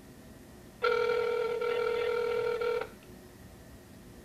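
Telephone ringback tone heard through a smartphone's speaker: one steady ring about two seconds long, starting about a second in and cutting off sharply. It is the sign that the dialled line is ringing and has not yet been answered.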